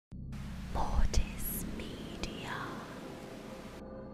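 Glitchy horror logo sting: a distorted whisper over static hiss and a low drone, with sharp digital clicks about a second in and again past two seconds. The static cuts off near the end, leaving soft sustained ambient tones.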